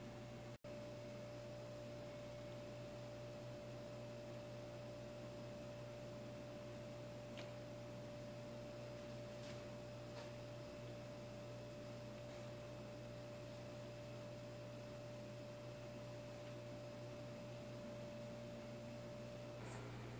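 Faint steady tone at one unchanging pitch, over a low hum. It starts just after a brief dropout near the start and stops shortly before the end.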